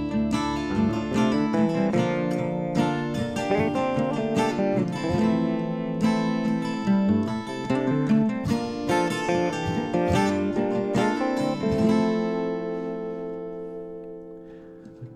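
Instrumental blues break on an Arnold Hoyer archtop guitar, with notes plucked in quick succession over chords. Near the end a last chord is left ringing and fades away.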